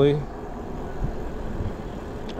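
Wind rushing and buffeting on the microphone, with road noise from 20×4-inch knobby fat tyres, as an ENGWE L20 e-bike is ridden at about 24 mph on throttle alone.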